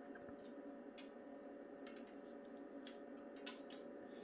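Quiet workshop room tone, a steady low hum, with a few faint light clicks of parts being handled on the engine.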